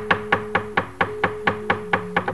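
Rapid, even knocking, about five or six sharp strokes a second, from a wayang dalang's cempala and keprak on the puppet chest, over steady low held gamelan tones.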